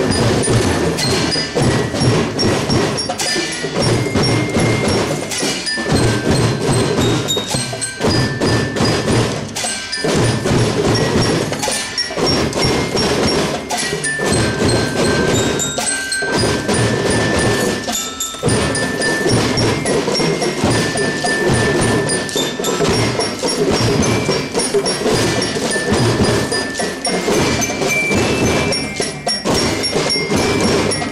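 Children's marching drum band playing: snare and bass drums beating a steady rhythm under a bright, bell-toned glockenspiel-like melody.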